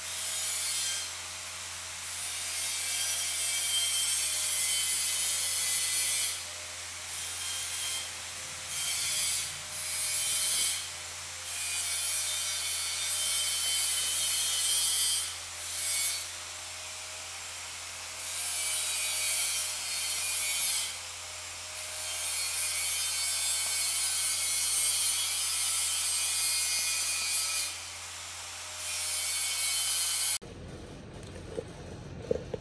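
TIG welding arc hissing and crackling on a steel bracket, starting and stopping about a dozen times in runs from under a second to several seconds long, with short gaps between, over a steady low hum.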